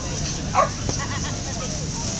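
A puppy's short, high yelp about half a second in, followed by a few faint yips, over a steady low background rumble.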